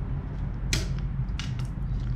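A handful of sharp clicks and light taps from a hand tool being handled at a license plate frame, the loudest about three quarters of a second in, over a steady low hum.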